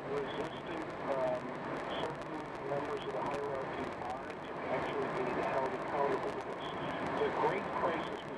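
Talk from a car radio news broadcast, heard over steady road noise inside a moving car.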